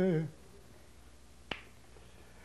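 A singer's held note trails off just after the start, then in the pause a single sharp finger snap about a second and a half in.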